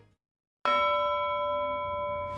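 A bell-like chime sting for a news section transition. It strikes suddenly about half a second in, after a brief silence, and its several clear ringing tones hold steady.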